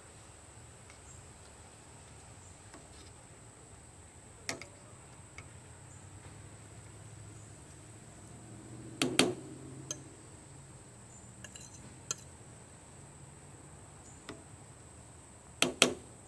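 A metal fork clinking against a metal skillet a few times as pieces of breaded liver are pushed down into gravy, the loudest clink about nine seconds in and two quick ones near the end. A steady high insect drone, likely crickets, runs underneath.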